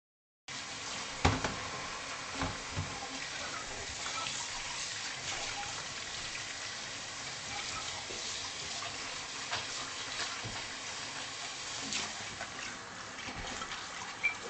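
A kitchen tap running into a sink, starting abruptly about half a second in, with a few sharp knocks while things are handled at the sink.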